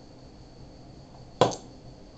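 A single sharp click about one and a half seconds in, over a faint steady hiss with a thin high whine in the background.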